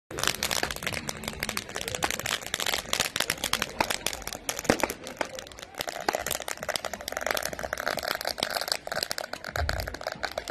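Ground firecrackers going off in a dense, unbroken crackle of small sharp pops.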